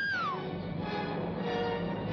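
A young woman's short scream, rising and then falling in pitch, at the start, followed by dramatic orchestral chords from the film score, held and shifting.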